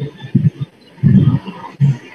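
A man's low, rough vocal noises in three short bursts, heard through a video-call microphone, without clear words.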